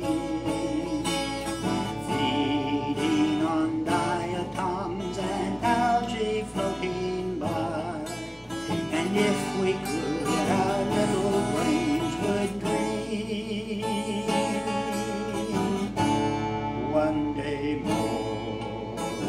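A man singing a slow song with vibrato while strumming a steel-string acoustic guitar.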